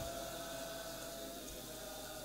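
Faint room noise: a steady hiss with a low hum under it, in a pause between chanted phrases.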